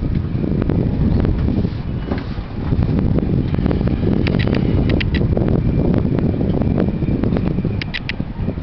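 Wind noise on the microphone, a loud steady low rumble that begins suddenly, with a few faint short high chirps now and then.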